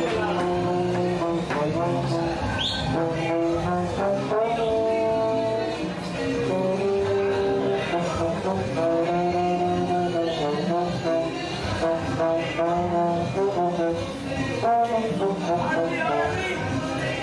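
A trombone playing a melody in long held notes, one note after another.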